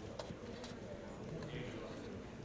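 Faint low murmur of people talking quietly in a large room, with a few light taps or clicks.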